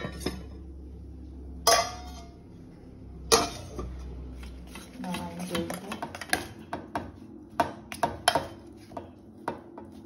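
Stainless steel pot lid clanking against the pot three times in the first few seconds over a low hum, then a spoon knocking and scraping in a steel pot, about twice a second, as the thick cooked ragi dough is mixed.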